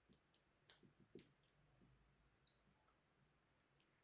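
Dry-erase marker writing on a whiteboard: faint, short squeaks of the felt tip, about a dozen at irregular spacing, with soft taps as the tip meets the board.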